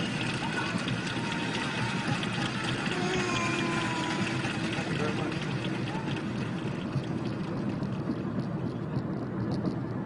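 Steady road and engine noise inside a moving car's cabin, with a few faint voice sounds in the first few seconds.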